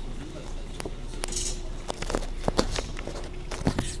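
Irregular knocks, clicks and rustling, typical of a camera or phone being handled with its lens covered, over a faint steady hum.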